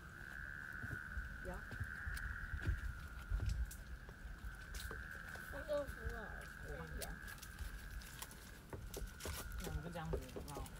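A steady high-pitched drone, typical of a chorus of insects, under low rumble and knocks of wind on the microphone. Faint voices of people talking come through around the middle.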